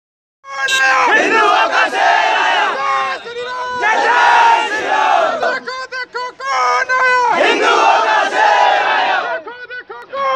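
Crowd of men shouting slogans together in long, loud bursts, with short thinner breaks between them. The shouting starts about half a second in.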